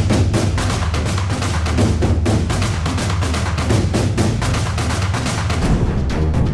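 Dramatic background music score with a fast, steady percussion beat over heavy low drums.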